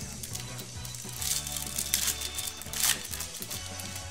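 Plastic wrapper crinkling and tearing as a trading-card box is unwrapped by hand, in three short bursts about a second apart, over steady background music.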